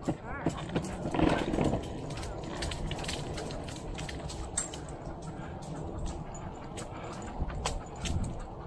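Irregular light clicks of a dog's claws on pavement as it trots beside a moving bicycle, over a steady low rumble of tyres and wind on the microphone.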